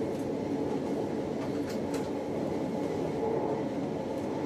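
Appenzeller Bahnen electric train heard from the driver's cab, running steadily along the line with a steady rumble of wheels on rails. A few faint clicks come about a second and a half to two seconds in.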